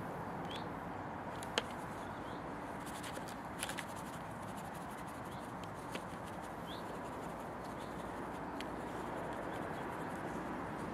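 Light clicks and taps of a brush working paint in a watercolour palette, the sharpest about one and a half seconds in, over a steady background hiss, with a couple of brief bird chirps.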